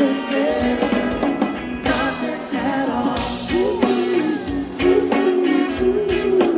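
A live band playing an upbeat pop song with sung vocals over electric guitars and drums, heard as loud concert sound from within the audience.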